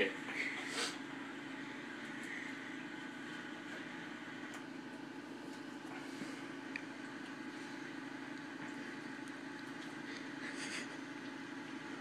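A steady low hum of background noise, with a couple of faint clicks part way through.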